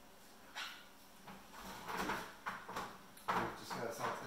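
Kitchen handling noises: a few short knocks and clatters, such as a drawer or cupboard being opened and shut, the loudest a sharp knock about three seconds in, with some faint voice underneath.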